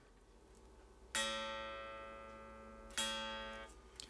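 Fender Stratocaster guitar plucked twice on an A note, played on the bridge pickup with volume and tone at 10. Each note starts sharply and rings down, the first about a second in and the second about three seconds in.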